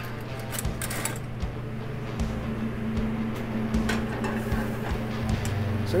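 Steady hum of commercial kitchen equipment, with a sauce simmering in a steel skillet on a gas range and a few sharp clicks and clinks of a utensil against the pan.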